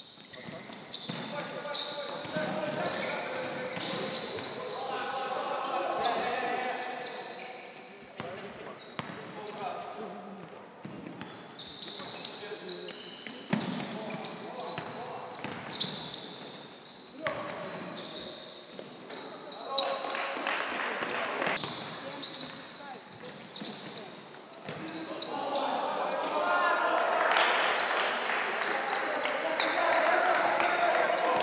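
Live basketball game sound in an echoing sports hall: a ball bouncing on the hardwood court now and then, under indistinct voices of players and people courtside calling out. The voices grow louder during the last few seconds.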